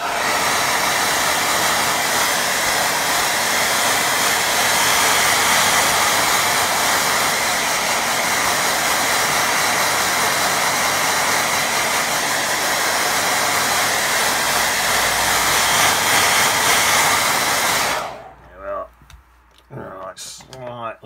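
Handheld hair dryer blowing steadily over a wet watercolour painting, loud, then switched off near the end.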